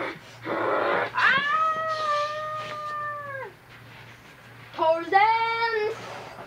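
Two long drawn-out meows. The first is held for over two seconds and falls away at the end; the second is shorter, near the end. They are preceded by two short breathy, hiss-like bursts.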